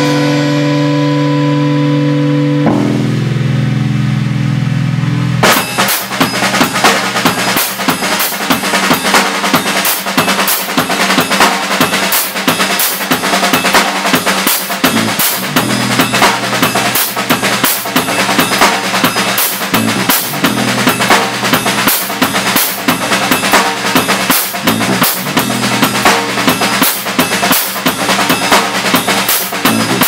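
Amplified bass guitar holding sustained, ringing notes, the low note changing about three seconds in. Then a drum kit comes in alone about five seconds in, a drum solo of rapid, dense hits on kick, snare and cymbals that runs on.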